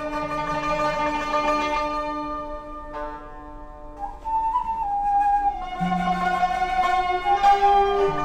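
Traditional Cantonese instrumental ensemble music: a slow melody of long held notes. About three seconds in it thins out and quietens, then comes back fuller with a note sliding up.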